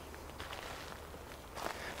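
Faint footsteps over a low, steady rumble.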